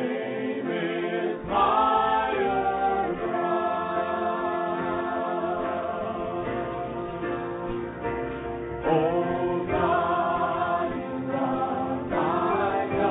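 A group of voices singing a gospel hymn together in long, held notes. A new phrase comes in louder about a second and a half in, and again near nine seconds.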